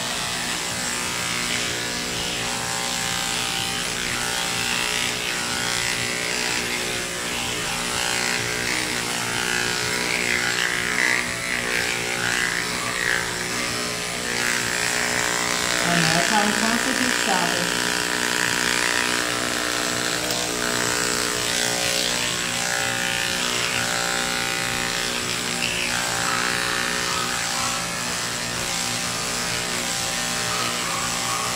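A cordless electric dog-grooming clipper runs with a steady motor buzz as it shears a schnauzer's coat. About sixteen seconds in there is a brief sound that slides up and down in pitch.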